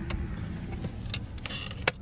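Toyota pickup's engine running, heard as a steady low hum from inside the cab, with a few light clicks and one sharp click near the end.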